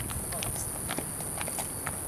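Footsteps of several people walking on pavement, a few irregular light taps and scuffs, over a steady high hiss.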